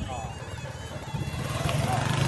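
People's voices in a busy outdoor crowd, with a steady low motor hum coming in about a second in and growing louder.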